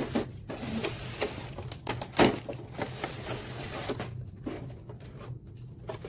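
A craft knife slitting the tape that holds a clear plastic blister tray shut: scraping and crackling of tape and thin plastic, with repeated sharp clicks and a louder click about two seconds in.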